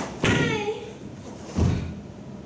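A karateka's sharp kiai shout, falling in pitch, and about a second later a heavy bare-foot stamp landing on a wooden dojo floor.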